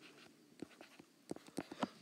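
Faint scratches and taps of a stylus writing on a tablet, a few short strokes with most of them in the second half.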